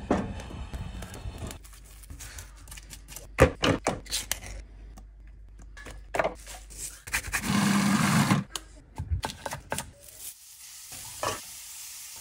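A string of kitchen sounds: knocks and clatter of utensils, a food processor whirring for about a second, and butter sizzling in a frying pan as it is spooned over broccoli near the end.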